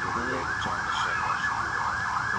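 Emergency-vehicle siren in its fast yelp mode: a rapidly repeating rising-and-falling wail, about five sweeps a second, holding steady.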